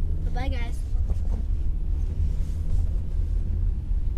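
Steady low road rumble of a car heard from inside the cabin while driving. A child's voice makes a short sound about half a second in.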